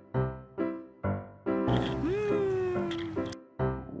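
Background music of repeated keyboard chords struck about twice a second. Midway comes a long held tone that swoops up and then sinks slowly for about a second and a half before the chords return.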